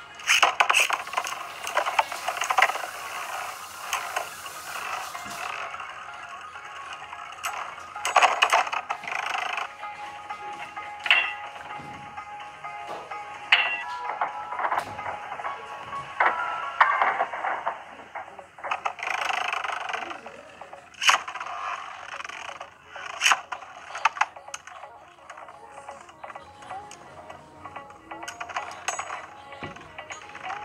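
Music playing over Beyblade battle sounds: plastic spinning tops launched into a plastic stadium, with a rushing spin noise over the first few seconds. Then come scattered sharp clacks as the tops strike each other and one bursts apart, its parts clattering across the stadium.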